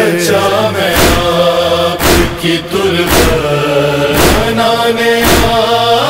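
Voices chanting a lament in long, held notes between the verses of a noha. They are set over a slow, steady beat about once a second.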